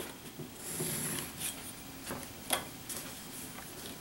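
Quiet handling of paper with a pencil and a metal ruler: a short pencil scratch along the ruler about a second in, then a few light taps and paper rustles.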